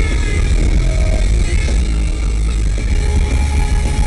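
Post-hardcore rock band playing live through a concert PA, electric guitar to the fore, loud and heavy in the bass.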